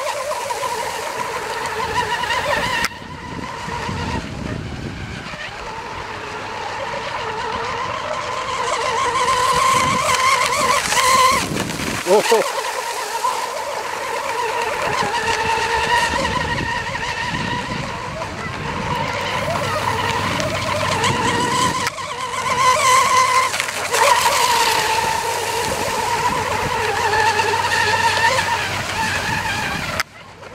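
A 1/8-scale RC hydroplane's motor running at full speed across the water. It makes a high-pitched whine whose pitch wavers up and down as the boat runs and turns.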